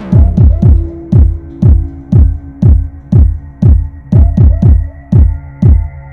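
Electronic music with a steady kick drum, about two beats a second, each kick dropping in pitch, over sustained synth tones; a higher held tone comes in near the end.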